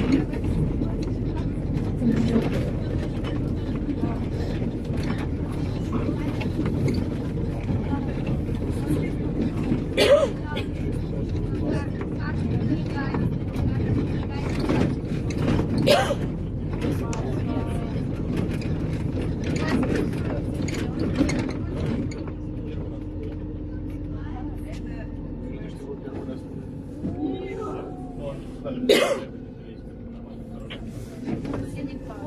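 Cabin of a moving MAZ 203 city bus: a steady low rumble of engine and road, with occasional sharp knocks and rattles from the body. The rumble eases after about 22 seconds.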